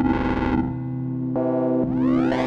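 EML 101 analog synthesizer sounding a sustained, buzzy tone rich in overtones while its panel knobs are turned. A burst of noisy, distorted texture over the tone dies away within the first second, and a new tone starts about a second and a half in.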